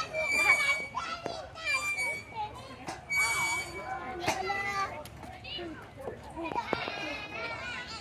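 Children playing and calling out in a playground, high young voices overlapping, with a couple of sharp knocks around the middle.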